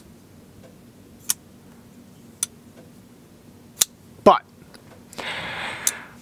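Real Steel front-flipper folding knife being flicked open and shut: a run of sharp metallic clicks about a second apart as the blade snaps past its detent, with a louder short sweep about four seconds in.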